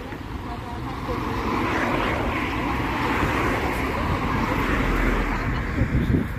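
Rushing noise of passing motor traffic on a city street, swelling slowly over several seconds with a low rumble underneath.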